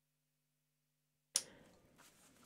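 Near silence with a faint low hum, broken about a second and a half in by a single sharp click, after which faint background noise comes in.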